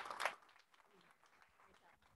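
Brief audience applause that dies away within about half a second, leaving faint room noise.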